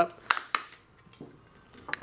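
Plastic clicks and snaps as the back cover of a Maxwest Astro 6 smartphone is prised off its clips: a sharp click about a third of a second in, a second soon after, then a few fainter ticks and one more click near the end.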